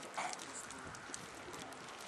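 A single short animal call about a quarter second in, over steady background noise.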